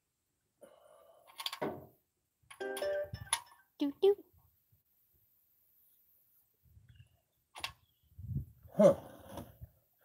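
A man humming a couple of short notes and muttering "huh", with a few brief clicks in between and quiet gaps.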